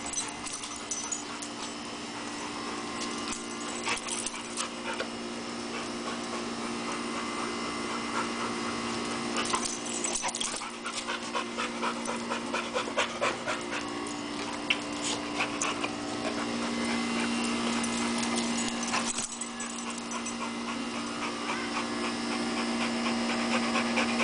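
A young blue-nose pit bull panting hard, out of breath from leaping, in quick rhythmic breaths that are strongest in the middle stretch. A steady low hum runs underneath.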